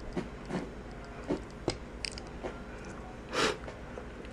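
Small plastic construction-toy bricks being handled and pressed together: scattered faint clicks and ticks, with a brief louder rustling noise about three and a half seconds in.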